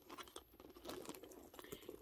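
Faint clicks and soft rustling of a quilted backpack being handled as its turn-lock flap is opened, with light taps of its metal hardware.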